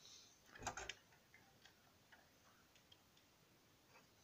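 Near silence: room tone with a brief soft rustle just after half a second in and a few faint, irregularly spaced ticks.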